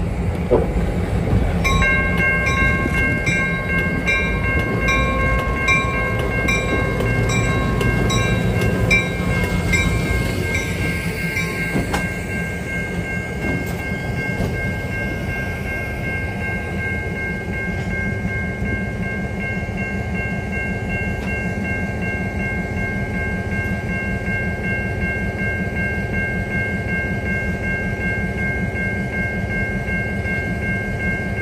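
Two EMD GP38-2 diesel locomotives rumbling past at low speed. A bell starts ringing about two seconds in, its strokes distinct at first, then running together into one steady ring after about twelve seconds.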